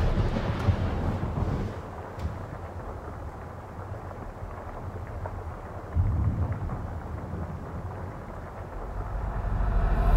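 Movie-trailer sound design: a low, steady rumble with a sudden deep hit about six seconds in, swelling louder toward the end.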